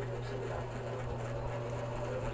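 A steady low hum under faint, even room noise.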